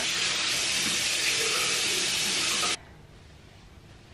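Bathroom tap running steadily into a basin, turned off abruptly a little under three seconds in.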